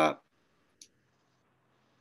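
A man's drawn-out syllable over a video call trails off just after the start, followed by near silence broken by one short, faint click a little under a second in.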